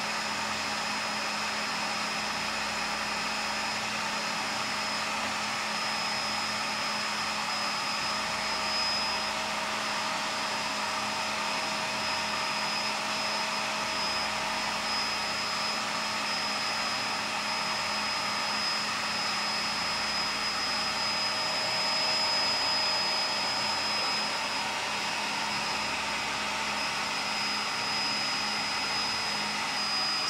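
IKAWA Home hot-air coffee roaster running while roasting a batch of green beans. Its fan makes a steady, rushing whir, with a constant low hum and a thin high whine over the air noise.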